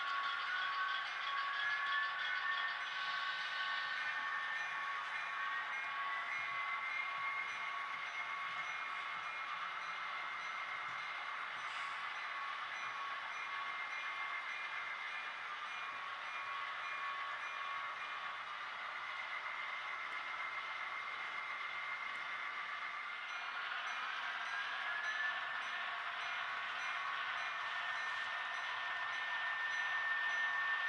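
HO scale model diesel locomotives running on the layout: a steady whine with a hum beneath, its pitch rising three times as the locomotives speed up.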